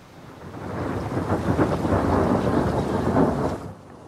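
A rumbling, rushing noise from the opening of a film clip's soundtrack: it swells in over about the first second, holds, and falls away just before the end.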